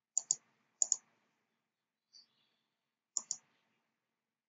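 Computer mouse buttons clicking: three quick double clicks, spaced out, with quiet between them.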